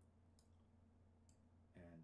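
Near silence with a steady low hum, broken by a few faint clicks from a computer mouse.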